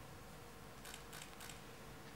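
Three faint, quick camera shutter clicks about a second in, over a low steady hum.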